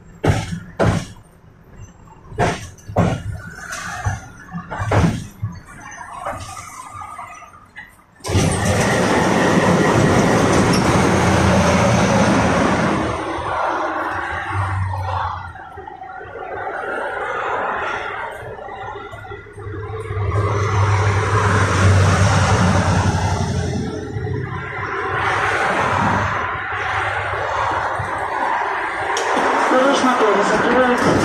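KTM-5M3 tram's wheels clicking over rail joints, often in pairs, while it runs along the track. About eight seconds in, a loud, steady running rumble with a low hum starts suddenly and carries on.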